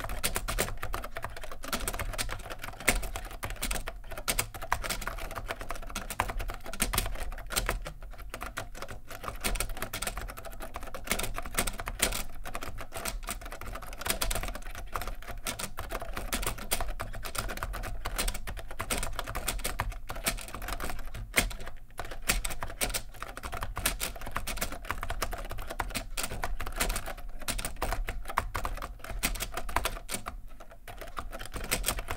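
Fast continuous typing on a Soviet TC7063 terminal keyboard with contactless magnetic reed switches: a dense, irregular clatter of ABS keycaps bottoming out, among them the strokes of its very rattly spacebar.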